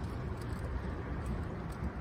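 Steady low rumble of wind buffeting the microphone out on open water, with no distinct event.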